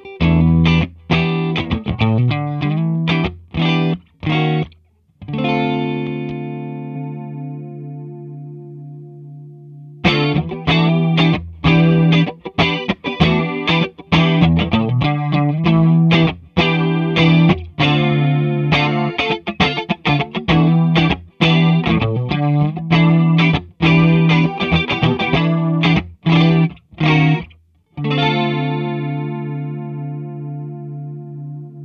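Fender Nashville Telecaster played through a Danelectro Cool Cat DC-1 chorus pedal into a Fender Deluxe Reverb Reissue amp, with the chorus giving the sound a regular wavering. It plays picked notes and chords, lets a chord ring and fade about five seconds in, picks on again from about ten seconds, and ends on another ringing chord near the end.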